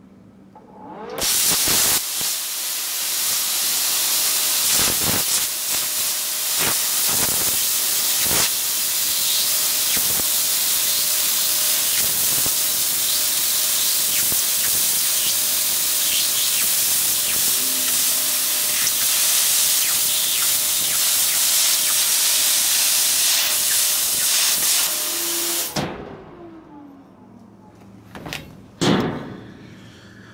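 Plasma cutter (Titanium Plasma 45) cutting through sheet metal, turned up near its 45-amp maximum: a loud, steady hiss of the arc and air jet that starts about a second in, runs for nearly 25 seconds and cuts off suddenly, followed by a short falling tone.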